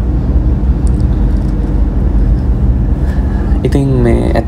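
A steady, loud low rumble with a faint hum in it and no clear rhythm or events.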